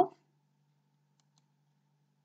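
Near silence: a faint steady low hum of room tone, with a couple of faint clicks just past halfway, after the last word of a woman's voice fades out at the very start.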